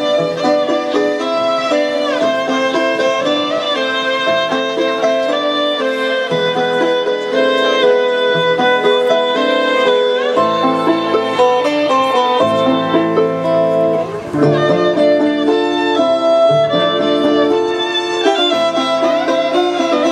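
Electric violin playing a lively melody over electric guitar and a backing track, with a short break about two-thirds of the way through.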